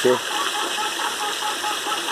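Steady rush of water running through an aquaponics system's PVC plumbing into the tanks.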